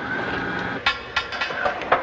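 A steady electronic hum, then from just under a second in, a series of sharp knocks several tenths of a second apart: a tapped code signal knocked out on a ship's hull by survivors answering a rescue crew.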